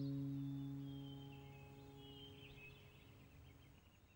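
The last strummed acoustic-guitar chord of the background music rings out and slowly fades away, with faint bird chirps above it.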